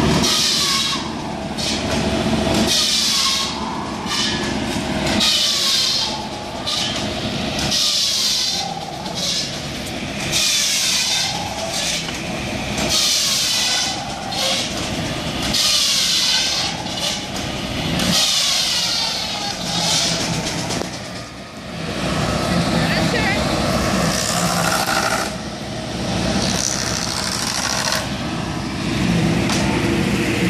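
Engine-driven shingle saw at work: a high-pitched whine of the blade cutting wood repeats about every two and a half seconds, each cut lasting a second or so, over the steady running of the engine. The cuts stop a little past twenty seconds in.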